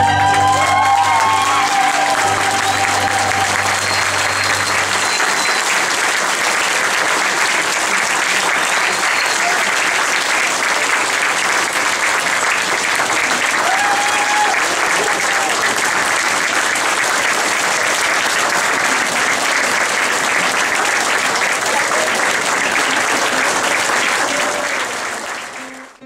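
Audience applauding at length, with a few whoops rising above it, while the song's last held chord dies away about five seconds in. The applause fades out near the end.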